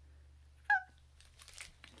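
A single brief, high-pitched vocal call, falling slightly in pitch, followed by faint crinkling and light clicks of handled packaging.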